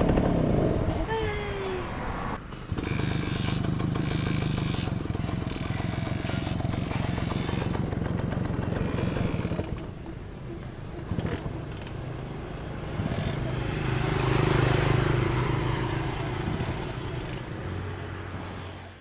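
Small two-stroke engine of a Suzuki step-through moped running steadily at idle, swelling briefly in a rev about three quarters of the way through.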